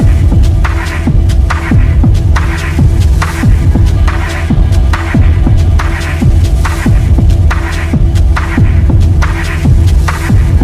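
Techno music: a kick drum at about two beats a second, each kick a quick downward sweep in pitch, over a steady bass drone, with brighter percussion hits between the kicks.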